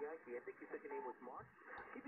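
Faint single-sideband voice from a Yaesu FTDX10 HF transceiver's speaker: a station's speech received over the air, thin and telephone-like with no treble.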